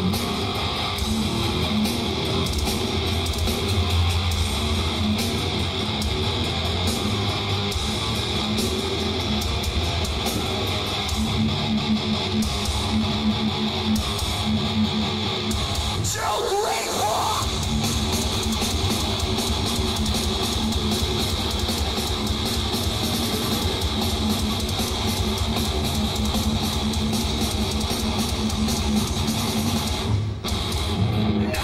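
Heavy metal band playing live: a loud, distorted electric guitar riff over heavy low end. About halfway through, a brief squeal glides upward in pitch.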